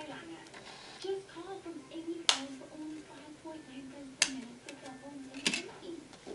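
Three sharp plastic clicks a second or two apart as a micro SIM card and its packaging are handled, with a faint wavering voice-like hum underneath.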